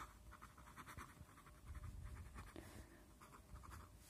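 Pen writing on paper: faint, quick scratchy strokes as words are handwritten.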